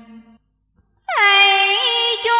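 A woman's voice chanting Hòa Hảo Buddhist scripture verses in a drawn-out sung style. One held note fades out, a short silence follows, and about a second in a loud new note begins, sliding down and then held steady.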